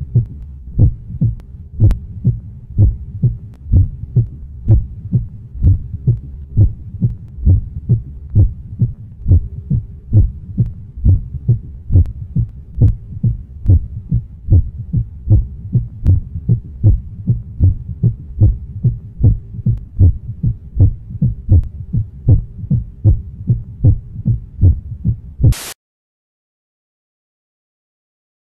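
Low, heartbeat-like thumping repeating evenly about twice a second over a faint steady hum. Near the end a short hissing burst sounds and everything cuts off suddenly.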